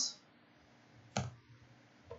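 A single computer keyboard keystroke about a second in, the Enter key sending a typed command, against otherwise quiet room tone.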